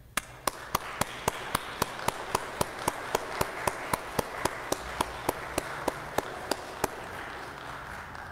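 A congregation applauding, with one clapper's loud, evenly spaced claps about four a second standing out over the crowd's clapping. The single claps stop near the end and the applause dies away.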